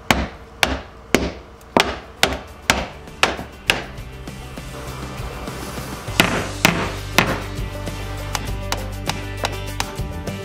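Hammer knocking on the underside of a barnwood countertop, sharp blows about two a second for the first four seconds, then three more a couple of seconds later. Background music comes in partway through.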